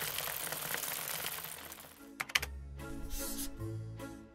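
Dried cacao beans pouring from a metal scoop into a hessian sack, a dense rattle lasting about two seconds. It is followed by a couple of clicks and then a short music sting with a beat.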